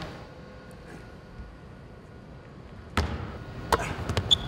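Quiet gym room tone, then two sharp thuds of a basketball, about three seconds in and again just before the end.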